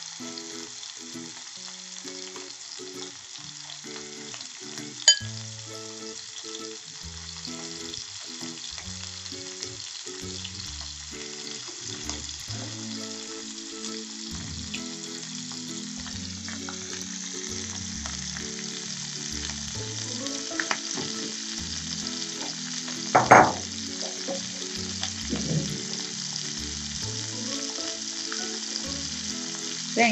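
Raw shrimp sizzling in hot olive oil in a frying pan as they are laid in, the sizzle growing stronger about halfway through as the pan fills. A sharp clink comes about five seconds in and a louder one near the end.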